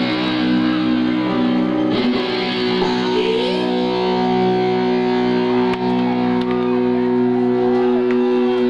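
Live punk band's distorted electric guitar and bass holding long ringing chords, without a steady drum beat. The chord changes about two seconds in and again about a second later.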